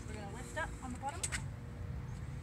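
Two quick clicks a little past a second in as the metal release bar under a van's bench seat is gripped and pulled to fold the seat down, over faint voices and a steady low hum.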